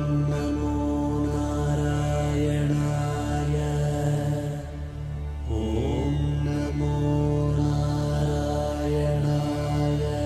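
Devotional mantra chanting set to music over a steady low drone. The loudness dips briefly around the middle, and a new chanted phrase begins about five and a half seconds in.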